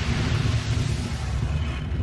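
Cinematic logo-intro sound effect: a heavy, steady low rumble with a hiss over it.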